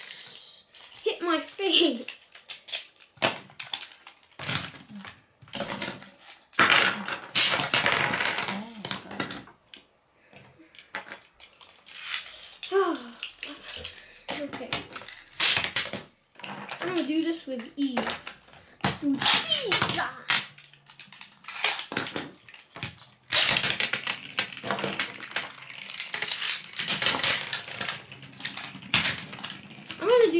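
Metal Beyblade spinning tops being launched onto a plastic tray and spinning there, giving many sharp clacks as they strike each other and the tray rim, with several longer rasping bursts from the launcher.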